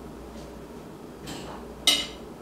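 One sharp knock near the end, with a softer brief scrape a little before it, as the small metal cup of ground flaxseed from an electric coffee grinder is handled and tilted over a plate.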